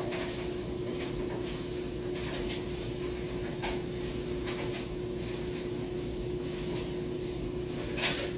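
Steady low electrical hum of room tone, with a few faint sharp clicks spaced about a second apart while a lighter flame is held to a joint and drawn on.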